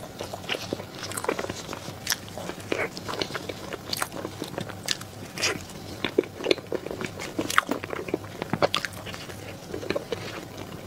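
Close-miked eating of a soft cream-filled pastry roll: biting and chewing, with many irregular mouth clicks and smacks.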